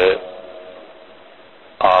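A man lecturing in Urdu: his phrase ends just after the start, a pause of about a second and a half follows with only a faint steady hum, and he speaks again near the end.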